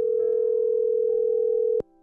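Telephone ringback tone while a call connects: a steady electronic tone, with fainter tones joining in, cut off by a click near the end when the call is answered.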